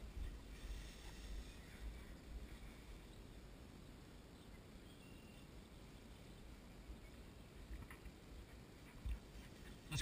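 Faint rustling and swishing through tall dry grass, strongest in the first couple of seconds, over a low wind rumble on the microphone.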